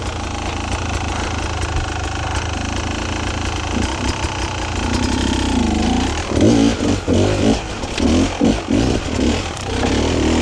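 Beta enduro motorcycle engine running steadily at low revs, then from about six seconds in revved in a series of short bursts, about two a second, as the bike picks its way up rock steps.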